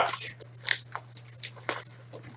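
Clear plastic shrink-wrap from a hockey card box crinkling and crackling in the hands in quick, irregular crackles, over a steady low hum.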